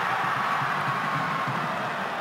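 Football stadium crowd noise: spectators' voices from the stands blend into a steady din.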